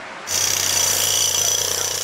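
Handheld pneumatic hammer chiselling at the stonework of a bridge pedestal, a steady hammering noise that starts about a third of a second in.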